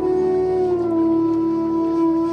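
Bansuri (bamboo flute) holding one long note that slides a little down in pitch at the start and then stays steady, over a faint steady low drone.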